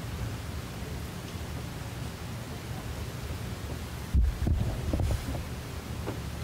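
Steady low hum of room tone, with a dull low thump about four seconds in and a few softer knocks just after it.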